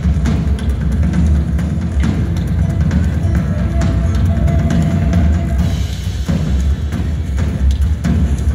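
Live band music: an acoustic drum kit playing over deep, loud bass, with a held higher note through the middle.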